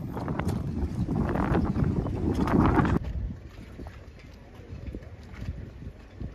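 Wind rumbling on the microphone for about three seconds, then, after an abrupt drop in level, quieter irregular small knocks and slaps of water lapping against the dock.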